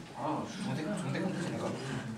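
Indistinct chatter of voices, people talking among themselves rather than one clear speaker.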